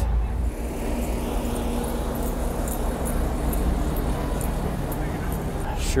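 City street traffic: car engines running in slow, congested traffic, a steady low rumble with a faint engine hum.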